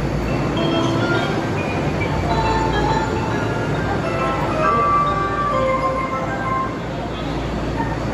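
Tokyo Metro Ginza Line subway train standing at an underground station platform with a steady low hum and station noise. Short electronic chime tones sound over it through the middle of the stretch.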